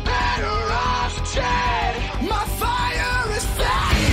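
Heavy rock music: electric guitar with a lead line that bends up and down in pitch, and yelled vocals.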